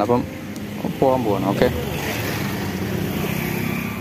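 A motorcycle and a car driving by on the street, their engines running steadily and drawing nearer over the last two seconds. A brief voice is heard about a second in.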